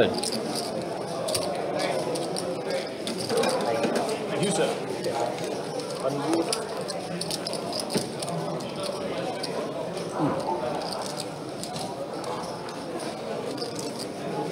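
Indistinct murmur of several people talking around the poker table, with scattered small clicks.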